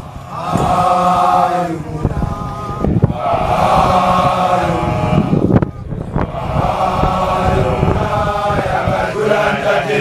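A large group of Basotho male initiates (makoloane) chanting together in long unison phrases, with short breaks between them.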